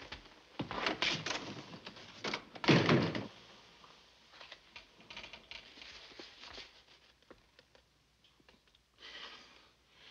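A few footsteps, then a door closing with a thud a little under three seconds in, followed by faint rustling of a sheet of paper being unfolded.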